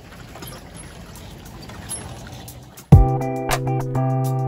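Water running quietly from the spout of a swing-driven water pump over hands being washed. About three seconds in, guitar music starts suddenly and is the loudest sound.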